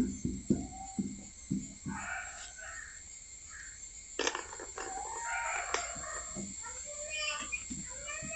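Birds calling, several pitched calls with some bending in pitch, after a few short knocks of a marker on a whiteboard in the first two seconds.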